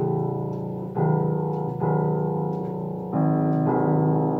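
Upright piano playing sustained chords, a new chord struck about once a second and ringing on until the next.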